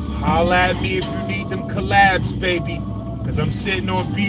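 A man's voice, loud and unclear, over a rap beat playing on a car stereo, with the car's engine and road noise underneath.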